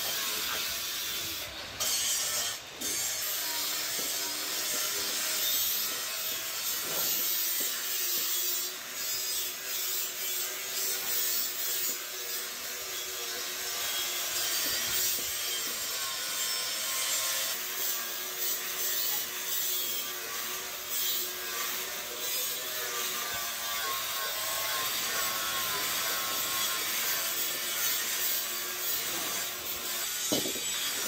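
Handheld electric angle grinder with an abrasive disc grinding the inside of a sheet-iron karahi pan: a continuous, hissing metal-on-abrasive sound over the grinder's motor, with small changes in level as the disc is moved across the pan.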